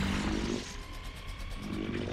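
Film sound effect of Mechagodzilla roaring: a deep mechanical roar that breaks off about half a second in. A steady high whine and fast clicking fill the middle, then the low roar rises again near the end.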